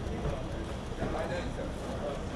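Hard-soled shoes stepping on a hard floor as several people walk in, with voices talking indistinctly over a steady low rumble of room noise.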